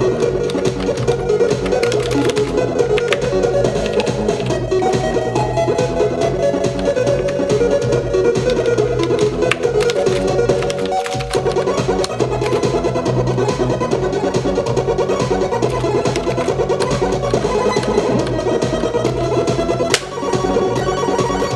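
Tracker-module song (MOD/XM) rendered by libmikmod on an STM32F4 microcontroller and played as mono audio through a PWM pin with a simple capacitor filter, with a little clipping in this song. The music runs continuously, with a brief dip about eleven seconds in.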